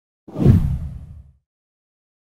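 A whoosh transition sound effect with a deep thud. It comes in suddenly about a third of a second in and dies away within about a second.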